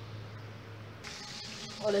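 Diced chicken breast frying in oil and margarine in a pan: a steady sizzle that starts abruptly about a second in. Before it there is only a faint low hum.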